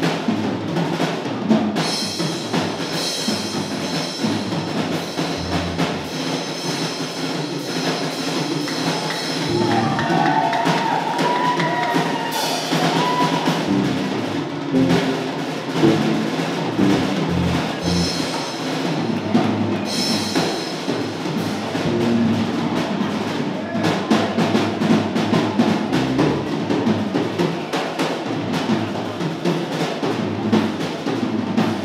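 A band playing an upbeat number, with a drum kit keeping a steady beat throughout.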